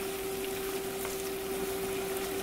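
Sliced yellow squash and onions sizzling gently in a stainless steel skillet, over a steady hum.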